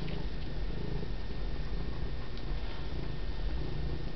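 Domestic cat purring close to the microphone: a steady low rumble.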